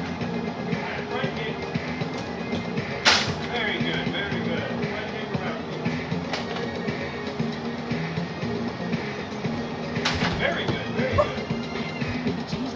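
Kicks smacking a handheld kicking shield: two sharp, loud smacks, about three seconds in and about ten seconds in, with a fainter one a little after six seconds. Background music and children's voices run underneath.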